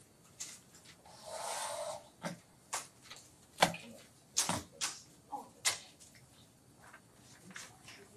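Papers being handled and small objects set down on a table. A rustle of about a second comes about a second in, followed by a handful of sharp clicks and knocks.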